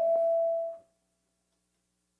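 Public-address microphone feedback: one steady ringing tone that swells slightly and then cuts off sharply just under a second in, followed by silence.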